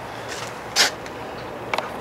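Footsteps scuffing on asphalt, a few steps with the clearest one about a second in, over a faint steady low hum.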